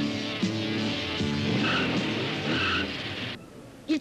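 A car pulling away over film soundtrack music, with two short tyre squeals near the middle. The sound drops away suddenly at a cut shortly before the end.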